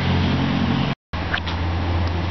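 Steady low mechanical hum, like a motor running, with a hiss above it. The sound cuts out completely for an instant about halfway through.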